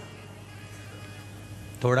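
A steady low hum with faint held tones underneath. A man's voice comes back in with a single word near the end.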